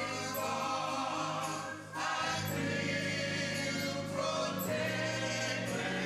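Gospel praise team singing long held chords in harmony over electric keyboard, with a short break about two seconds in before the next chord.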